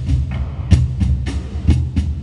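Three cajóns played by hand together: deep bass thuds and sharp slaps on the wooden boxes in an uneven, syncopated rhythm, a few strokes a second.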